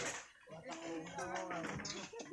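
People talking, their words unclear.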